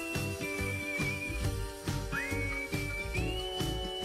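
Background music: a whistle-like lead holding long high notes, sliding up into a new note about halfway through, over sustained chords and a soft low beat.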